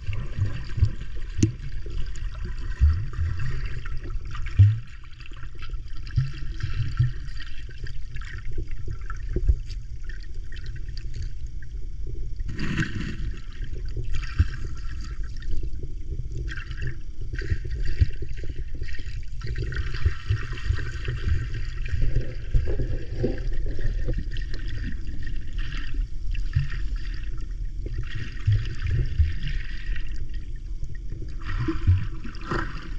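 Seawater sloshing and gurgling, heard muffled from just below the surface, over a steady low rumble. Patches of hissier splashing come and go, the strongest about twelve seconds in.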